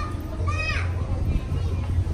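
A young child's brief high-pitched cry about half a second in, over a steady low rumble.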